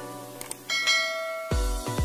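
Bell-icon click sound effect over a music bed: a quick double click about half a second in, then a single bell ding that rings on. Near the end an electronic dance beat with heavy bass kicks comes in.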